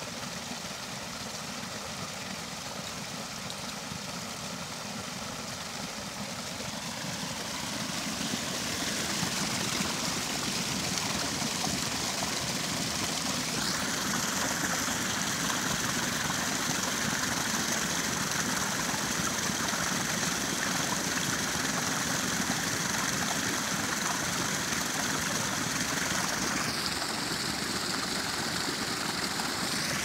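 Water rushing down a wooden flume and pouring onto a small overshot waterwheel, the diverted high flow flushing leaves out of the flume. The rush builds over the first ten seconds and turns brighter and fuller about fourteen seconds in, then holds steady.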